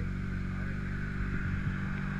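Motorcycle engine idling steadily.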